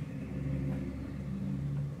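Room tone: a steady low hum, the background noise of the room's ventilation.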